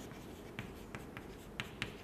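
Chalk writing on a chalkboard: a faint run of short, sharp chalk strokes and taps, about three a second, as letters are written out.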